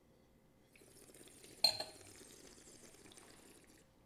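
Red wine being aerated in the mouth: a long hissing slurp of air drawn through the wine, from about a second in until just before the end, with one sudden sharp sound about a second and a half in.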